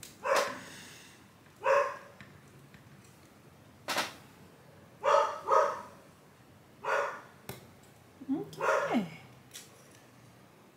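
A dog barking in short single barks at uneven intervals, about six in all, the last one sliding in pitch. Two sharp clicks come between the barks, about four seconds and seven and a half seconds in.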